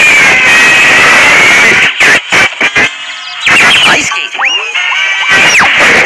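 Soundtrack of a classic cartoon clip: loud music with cartoon sound effects, breaking into short choppy bursts about two seconds in, and a high tone that glides up, holds and then falls away near the end.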